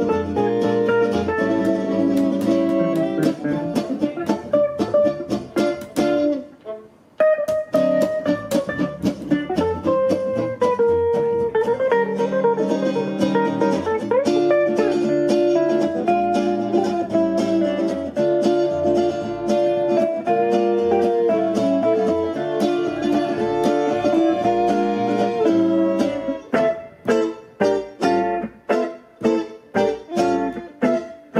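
Live swing jazz from a quartet of violin, two guitars and upright bass. The band breaks off for a moment about seven seconds in, and near the end the playing turns to short, punched chords about two a second.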